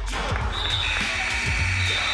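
A referee's whistle blown in one long blast starting about half a second in, over pop music, with a few thumps of a basketball bouncing on the gym floor.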